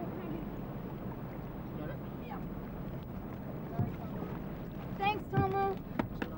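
A small open boat's motor idling steadily, with water and wind noise around it. Short bursts of people's voices come in near the end.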